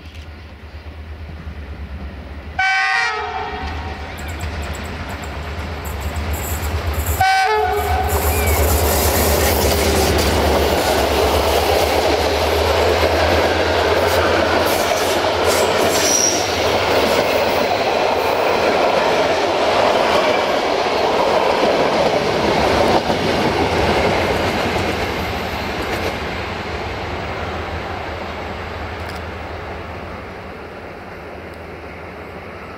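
A GM Class 65 diesel-electric locomotive approaches with a low engine drone and sounds its horn twice, two short blasts about four and a half seconds apart. It then passes hauling its passenger coaches, their wheels loud and rushing over the rail joints, and the noise fades as the train draws away.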